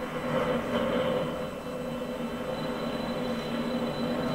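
Antares rocket's two AJ26 first-stage engines at ignition and liftoff: a steady, rushing rumble that swells over the first second and then holds.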